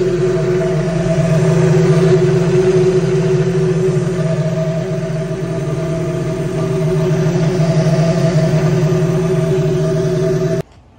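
Supercharged 1.8-litre VVT four-cylinder Miata engine with an M45 supercharger, running at a steady idle with no revving.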